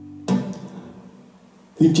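Acoustic guitar chord struck once about a quarter second in and left to ring and fade, over a steady held tone. A man starts speaking near the end.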